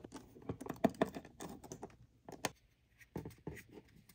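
A small precision screwdriver clicking and scraping in the screws of a Conner CP2045 2.5-inch hard drive's case, with light irregular taps of fingers handling the drive; a sharper click comes about halfway through.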